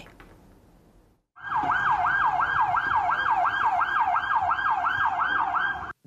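Emergency vehicle siren in a fast yelp, its pitch sweeping up and down about three times a second; it starts about a second and a half in, after a short near-silent gap.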